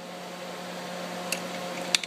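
Steady background hum with two faint light clicks in the second half: a hole saw rocked by hand on its arbor, clicking in its play.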